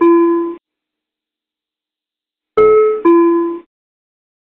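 ATR cockpit aural alert: a two-tone chime, a higher note followed by a lower one. It sounds as the tail of one pair just after the start and as a full pair about two and a half seconds in.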